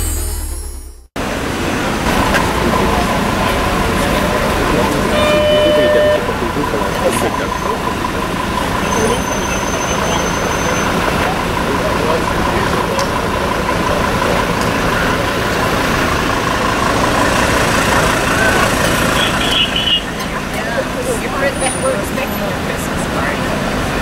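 Electronic intro music fading out, then street ambience: people talking around a parked car and road traffic running.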